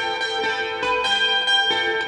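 Clean electric guitar (a Yamaha Pacifica) picking a few single notes one after another, each left ringing so they overlap.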